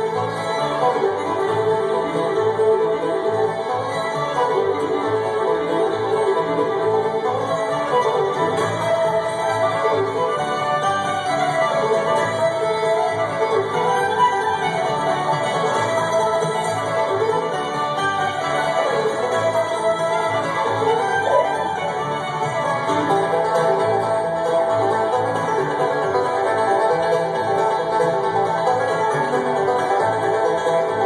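Live acoustic bluegrass band playing an instrumental passage with no singing: fiddle, mandolin, acoustic guitar, upright bass and five-string banjo.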